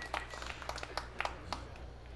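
Scattered applause from a small arena crowd: irregular individual claps that thin out toward the end, over a low steady hum.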